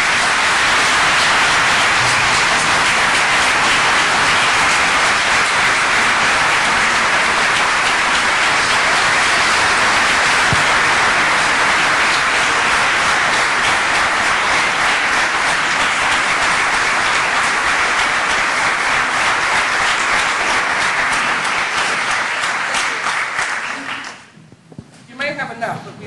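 Audience applauding, loud and steady, dying away near the end.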